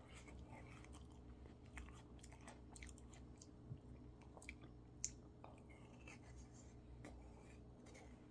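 Faint close-up mouth sounds of eating peach ice cream: chewing, and wet smacks and sucks from licking fingers, with scattered soft clicks and two sharper ones about four and five seconds in. A low steady hum runs underneath.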